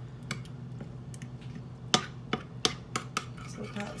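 A spoon stirring a thick, wet mixture of pumpkin purée, milk and seeds in a bowl, clicking and tapping against the bowl in irregular strokes.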